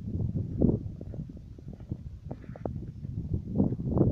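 Wind rumbling on a phone's microphone, with scattered knocks and rustles from handling and walking.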